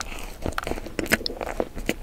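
Close-miked chewing of a crunchy pink-iced, sprinkle-topped treat: a run of irregular crisp crunches and crackles in the mouth.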